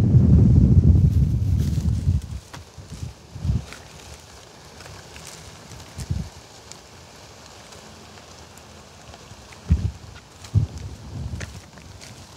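Wind rumbling on the microphone for about two seconds, then a quieter stretch of outdoor background with a few dull thumps and faint crackles from footsteps through dry rice stubble and cracked mud.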